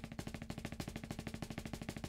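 Double stroke roll on a snare drum, a fast, even stream of strokes with the drum's pitch ringing underneath. The sticks are held in the fists like hammers and driven by the forearms alone, with no fingers or wrists, and the roll still sounds fairly even.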